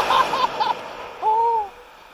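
A man's breathless vocal sounds just after a gorge-swing drop: a few short gasping cries, then one long sigh that rises and falls in pitch.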